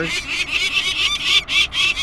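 Downy peregrine falcon chick calling in protest at being handled: loud, high-pitched calls repeated in quick succession.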